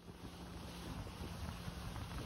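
Motorboat under way on open sea: wind on the microphone and the rush of water, with a faint steady engine hum underneath. It fades in over the first half second.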